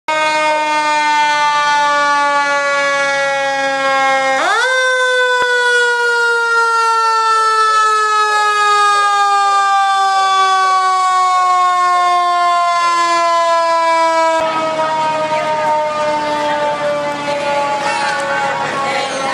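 Fire engine siren wailing, its pitch falling slowly. About four seconds in it sweeps sharply up, then falls slowly again. Near the end the siren goes on under a louder noisy background.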